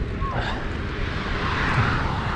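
Wind buffeting the microphone of a camera on a moving mountain bike, over the rumble of tyres rolling on a dirt path; the noise swells in the second second.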